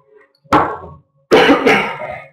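A person coughing close to the microphone: one cough about half a second in, then two more in quick succession near the end.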